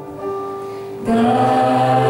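A man and a woman singing a Christian worship song in Romanian, with keyboard accompaniment. A softer held note carries the first second, then the voices come in together in harmony at about a second in.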